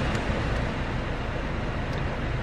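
The Citroën ë-Berlingo's climate-control blower fan running, a steady rush of air.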